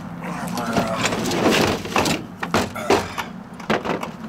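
Tools and metal parts clattering in an aluminum diamond-plate storage compartment as they are shifted around by hand, with several sharp knocks in the second half.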